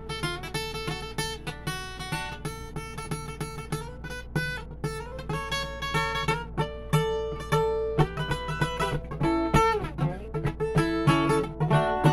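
Acoustic guitar played without singing: a quick run of picked notes mixed with strummed chords, over a steady low hum.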